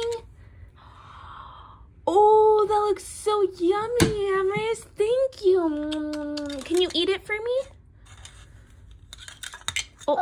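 A young child's voice making wordless, high-pitched vocal sounds with held and gliding notes, then a few light clicks near the end.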